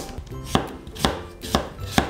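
Kitchen knife slicing a cucumber into thin diagonal slices on a wooden cutting board. Each cut ends in a sharp knock of the blade on the board, about two a second in an even rhythm.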